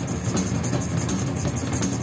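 Acoustic drum kit played fast in a rock drum part: a continuous cymbal wash over dense, rapid drum strokes.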